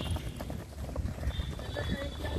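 Footfalls of a group of runners jogging on a dirt track, a run of soft thuds over a low rumble. A thin, steady high tone comes in a little past halfway.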